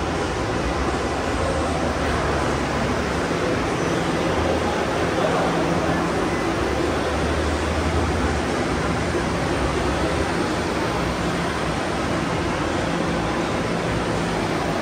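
Steady background din with a low hum that swells and fades a couple of times, and faint voices mixed in.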